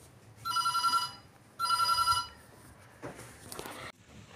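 Electronic telephone-style ringing: two trilling rings, each well under a second long, about half a second apart.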